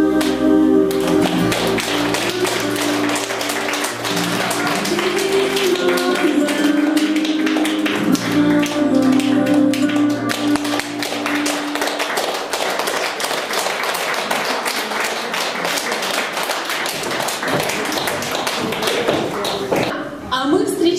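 Audience clapping from about a second in, over two women singing the closing notes of a song with music. The singing and music stop about halfway through, and the clapping goes on alone.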